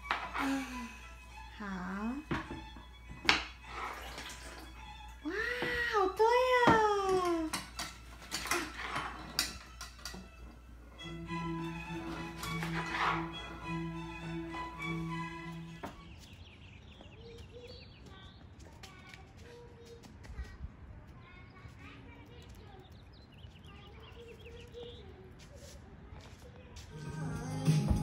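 A young child's high-pitched voice with rising and falling calls, loudest about six seconds in, over background music, with scattered sharp clicks.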